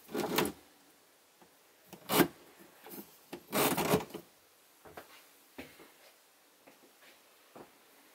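Pull-out spray head and hose of a chrome washbasin mixer tap being drawn out and handled: rubbing and clunking, with a sharp knock about two seconds in as the loudest sound and a longer rub a second later, then a few faint clicks.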